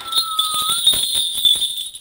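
A Korean shaman's cluster of small brass ritual bells (bangul) shaken rapidly, jingling with a bright high ring for about two seconds and stopping near the end. This is the shaking of the bells that opens a spirit reading.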